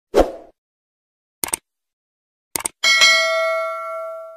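Subscribe-button animation sound effects: a soft pop, then two quick double clicks about a second apart, then a notification bell chime that rings out and slowly fades.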